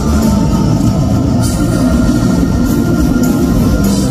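A rock band playing live and loud, led by electric guitars.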